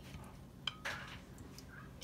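Kitchen tongs clinking once against a bowl about two-thirds of a second in, followed by a brief scrape, while a fried chicken wing is dipped in hot sauce.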